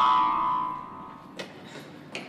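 Background film score ending on a held high note that fades out over the first second. Then, about a second and a half in, a single sharp footstep on a concrete floor.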